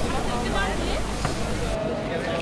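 Background chatter of several people's voices over a steady noisy hiss, with the sound changing abruptly near the end.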